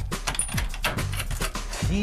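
Old wooden trapdoor and its release mechanism rattling and clattering as a cord is pulled to open it, a quick run of knocks and rattles.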